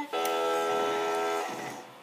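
SpongeBob SquarePants Spin O'Clock toy clock playing a short electronic musical chord, held steady for over a second and then fading out.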